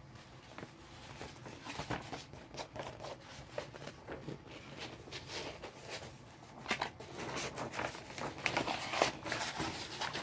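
A rolled paper poster being handled, unwrapped and unrolled: irregular rustling, crinkling and scraping of paper with scattered small taps and clicks, busier in the second half.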